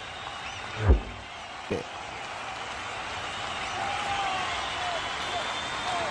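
Outdoor cricket crowd noise, a spread of chatter and cheering that slowly builds after a six is hit. Two short dull thumps come about one second in and again just under two seconds in.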